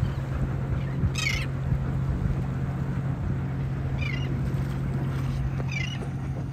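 Seabirds calling over the trawler, three short high-pitched, wavering calls about a second in, about four seconds in and near the end. Under them a boat engine hums steadily at idle.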